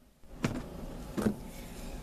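Handling noise from a cigar box being moved about on a table: two short knocks, about a second apart, over steady background noise.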